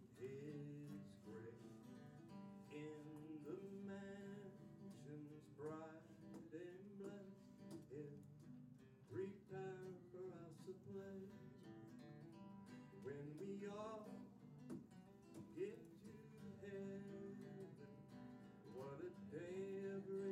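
Acoustic guitar strummed steadily as a hymn accompaniment, with a man's singing voice coming in at times.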